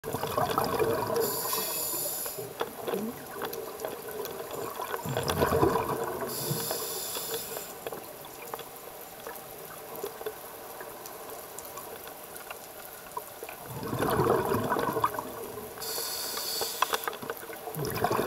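Scuba diver breathing through a regulator underwater. Three breaths: each is a gurgling rush of exhaust bubbles, followed by about a second of high hiss as air is drawn through the demand valve, with a longer gap before the third breath.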